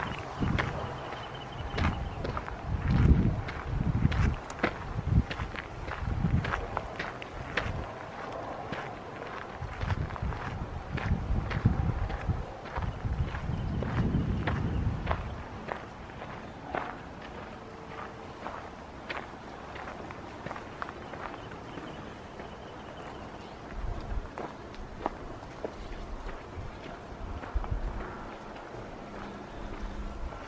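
Footsteps of a person walking on a dirt and gravel trail, a steady run of crunching steps. Low rumbles come and go through the first half.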